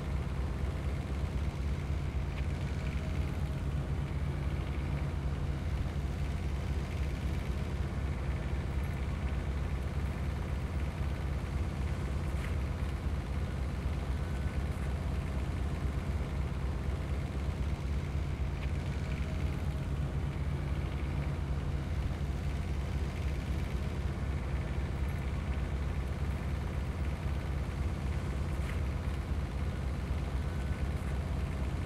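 Diesel engine of a trailer-mounted mastic melter-applicator running steadily, a continuous low drone.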